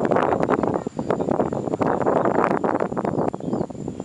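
Wind buffeting the camera microphone: a loud, rumbling, crackling noise that cuts off suddenly at the very end.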